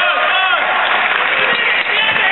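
Basketball gym sound during play: a steady wash of voices and chatter with a few short, high sneaker squeaks on the hardwood floor.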